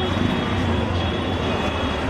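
Loud, steady street din with a low rumble, from traffic and people out in the street.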